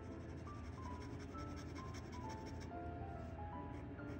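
A dip pen's nib scratching across paper in quick short strokes as a word is handwritten, over soft instrumental background music with a slow melody of held notes.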